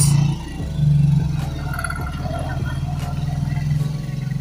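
Motor vehicle engine running close by, a steady low rumble of morning traffic outside, fading out sharply near the end.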